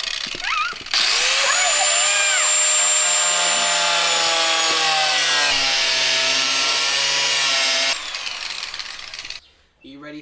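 Angle grinder cutting into the steel side panel of a Mercedes Sprinter van, with a loud high whine. It drops out briefly just after the start, spins back up about a second in, and cuts off about eight seconds in.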